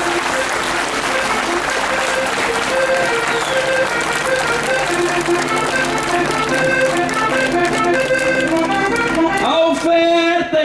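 Crowd applauding over an accordion playing a steady instrumental passage of a desgarrada tune; the clapping thins out near the end while the accordion carries on.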